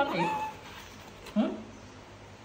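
A baby macaque's short, high squeaky calls, mixed with brief voice sounds, in two bursts: one at the start and one about a second and a half in.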